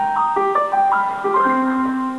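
Closing bars of a song: a bell-like keyboard plays a short line of single notes, then settles on a held low note and chord about one and a half seconds in.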